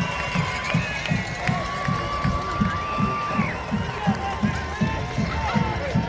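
Footsteps of someone walking briskly, heard as low thuds on the handheld microphone about three a second, over the murmur of a stadium crowd.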